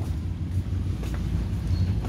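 Steady low rumble of background noise, with a few faint light knocks about a second in.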